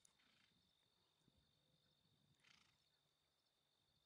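Near silence: a faint steady high whine, with two brief faint hisses.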